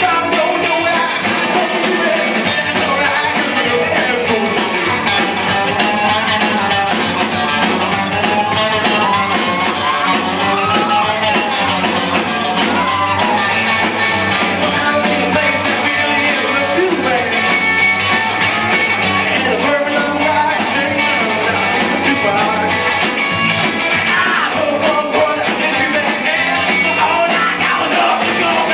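A live rock band playing a song: electric guitars through amplifiers and a drum kit, with a sung vocal.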